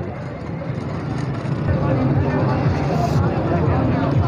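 Market crowd noise: background voices chattering, with a motor vehicle's engine running close by that grows louder after about a second and a half.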